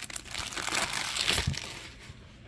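Clear plastic shrink-wrap being peeled off a cardboard box and crinkled in the hands, a dense crackle that fades out near the end.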